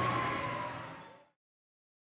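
Amusement park ride noise from old video footage, with a held tone that sags slightly in pitch, fading out to silence about a second and a quarter in.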